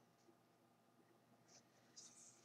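Near silence: room tone, with one faint brief tick about a second and a half in.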